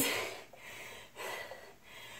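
A woman breathing hard from exertion during tricep dips, two audible breaths about half a second apart.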